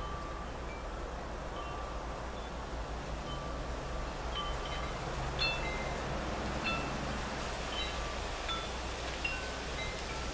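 Wind chimes sounding irregularly: single short ringing notes at differing pitches, a few each second, over a steady rush of background noise.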